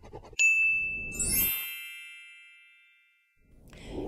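Logo-sting sound effect: a single bright bell-like ding about half a second in, joined about a second in by a glittery high shimmer, both ringing out and fading away over the next two seconds.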